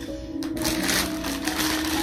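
Clear plastic packaging bag crinkling as it is handled, starting about half a second in, over steady background music.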